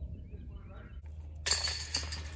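A disc golf putt hits the basket's metal chains near the end: a sudden metallic jangle that rings on and slowly fades.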